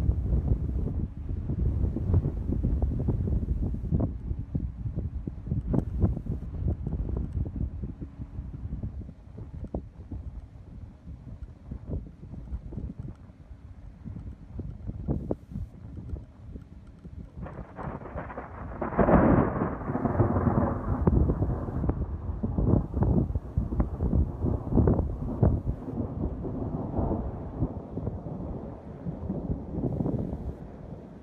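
Thunder from a storm: wind buffets the phone microphone throughout, then a rumble breaks in suddenly about two-thirds of the way through and rolls on, fading slowly.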